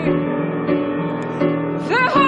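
Upright piano playing held chords in a slow song, changing chord every 0.7 s or so, between sung phrases. Near the end a woman's voice slides up into a new held note.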